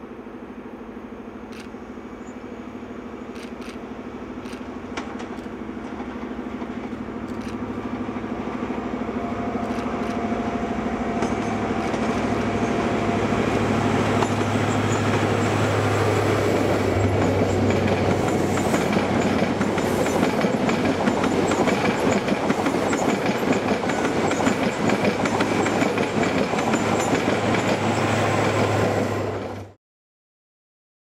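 High Speed Train (InterCity 125) approaching, its diesel power car's steady engine note growing louder for about fifteen seconds. Then the coaches pass close by with a loud rush and rattle of wheels on the track. The sound cuts off suddenly just before the end.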